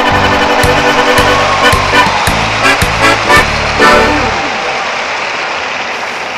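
Closing bars of an accordion pasodoble over a programmed backing of bass and drums, under a loud hiss-like wash. The bass and drum hits stop about four seconds in, leaving the wash to fade slowly.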